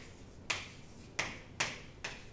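Chalk tapping and clicking against a chalkboard while writing: three sharp, separate clicks spread over two seconds.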